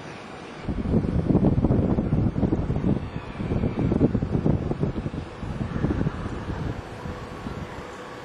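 Wind buffeting the camera microphone: a loud, gusty low rumble that starts under a second in, swells and dips for about six seconds, then dies back to a steady background hiss.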